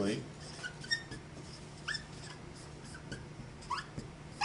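Dry-erase marker squeaking on a whiteboard as letters are written: a few short, high squeaks, one about two seconds in and another near the end.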